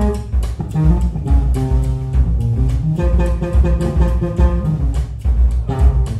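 Jazz-funk trio playing live: electric guitar with sustained notes and chords, electric bass and a drum kit keeping a steady, even beat.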